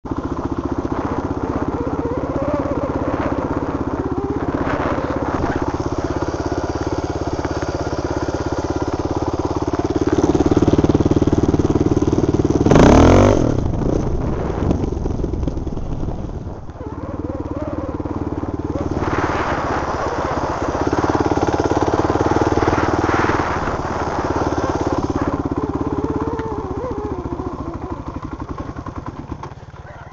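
Dirt bike engine running as the bike rides through snow, its note rising and falling with the throttle. There is a loud short burst about halfway through, and the engine fades away near the end.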